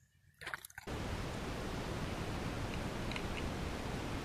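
A short faint rustle, then a steady hiss that starts suddenly just under a second in and holds level, with a few faint ticks about three seconds in.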